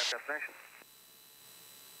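Speech only: a man's voice trails off, followed by a brief muffled voice, then near silence. No aircraft engine sound can be heard.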